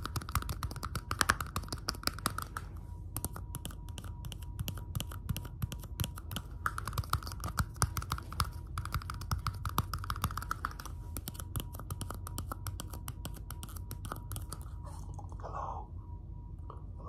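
Fast, dense fingertip and fingernail tapping and clicking on clear plastic cups held close to the microphone, with a few sharper, louder taps among them.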